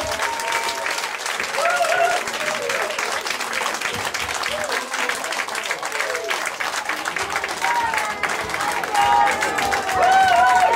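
Audience applauding steadily, with voices calling out over the clapping.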